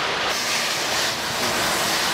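A steady rushing noise, even and unchanging, with no distinct impact or engine note.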